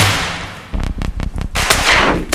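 Gunshots and sharp bangs: one at the start that fades away, a quick run of short cracks about a second in, then a louder burst near the end.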